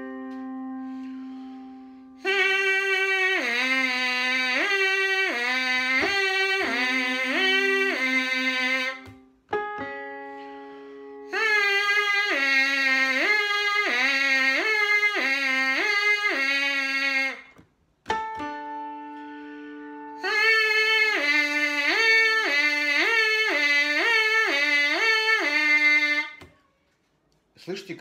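Trumpet mouthpiece buzzed in three runs of quick slurs back and forth between two notes a fifth apart. This is a tongue-syllable exercise on "hee" and "ho". Each run is preceded by a held keyboard chord that fades away.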